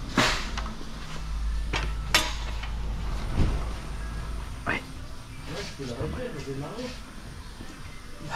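Several sharp knocks and clanks of metal tools and parts being handled on a steel motorcycle lift table, about five spread over the first five seconds, with a low hum in between.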